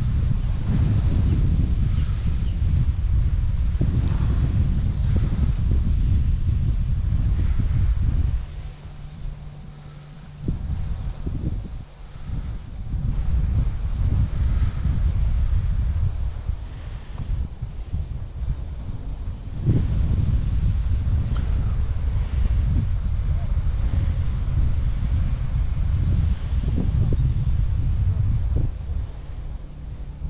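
Wind buffeting the microphone: a loud, steady low rumble that drops away for a couple of seconds about a third of the way in and stays weaker for a few seconds after.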